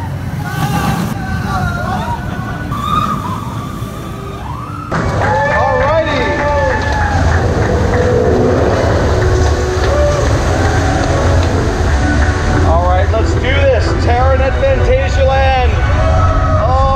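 Voices and background music over a steady low rumble. About five seconds in the sound changes abruptly to a louder, duller recording, with the rumble stronger beneath the voices and music.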